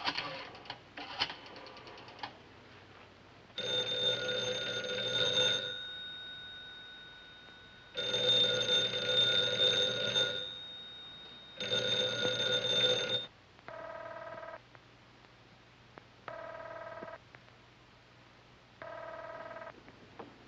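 A few clicks, then a telephone bell rings three times, about two seconds each ring. Three shorter, quieter buzzing tones follow at even spacing.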